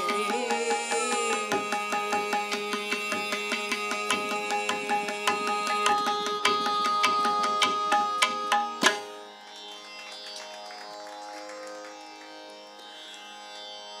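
Carnatic instrumental passage without voice: mridangam and ghatam strokes in quick rhythm over the tambura drone and held violin notes. A sharp stroke about nine seconds in ends the drumming, and the drone and violin carry on more softly.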